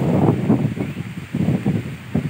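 Wind buffeting a phone's microphone in irregular gusts, strongest at the start and easing off.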